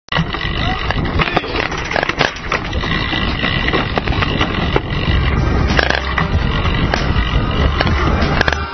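Mountain bike riding fast down a dirt trail, heard from a camera mounted on the bike: tyres rolling over the dirt, the bike rattling, and frequent sharp knocks from bumps. A low rumble grows stronger about halfway through.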